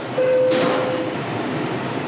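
Close-up rustling and crinkling of a plastic parts bag and a paper instruction sheet being handled and unfolded.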